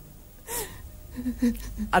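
A man's sharp, audible intake of breath about half a second in, followed by a few soft, halting voice sounds before he starts to speak near the end, in a tearful dialogue.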